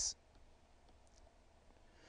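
Faint clicks and scratches of a stylus on a pen tablet as a short arrow is drawn, just after the end of a spoken word.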